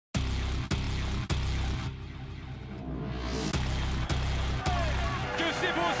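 Dramatic trailer music with heavy bass hits, a rising sweep in the middle, then a voice coming in over it near the end.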